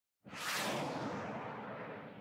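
A whoosh sound effect from a news-show intro graphic. It comes in suddenly a moment in, hissing bright at first, then slowly fades away.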